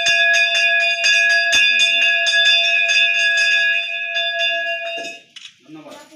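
Brass temple hand bell rung rapidly during worship, about six strokes a second over a steady ringing tone, stopping about five seconds in.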